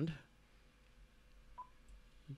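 Icom IC-7300 transceiver's band edge beep: one short beep about one and a half seconds in, as the main tuning dial is turned back across the 14.000 MHz edge into the 20 m amateur band.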